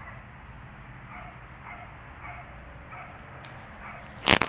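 Outdoor street ambience: a steady low rumble, with faint short animal calls repeating about twice a second from about a second in.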